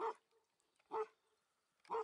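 A dog barking: three short barks about a second apart.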